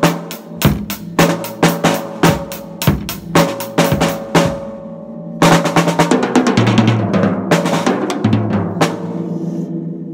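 Drum kit played with sticks: a steady beat of evenly spaced hits, a short break about four and a half seconds in, then a fast fill of rapid strokes that stops about nine seconds in and rings out.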